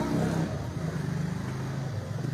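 A motor vehicle engine running: a low, steady hum whose pitch shifts slightly, heard in a pause between speech.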